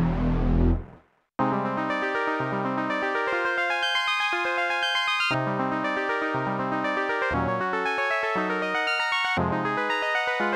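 Analog polyphonic synthesizer playing. For about the first second a Korg minilogue bass holds a dense, low, gritty sound, which cuts off suddenly. After a short silence, a fast run of bright pitched notes over low pulsing bass notes begins and carries on.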